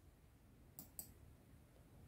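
Near silence, with two faint clicks a fifth of a second apart just before the middle.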